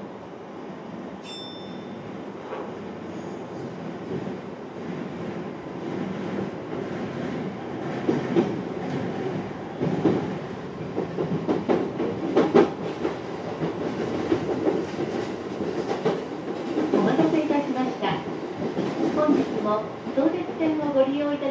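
Sotetsu 12000 series electric train picking up speed out of a station, heard from the driver's cab: a running rumble that grows louder, with wheels knocking over points and rail joints. A short high beep sounds about a second in.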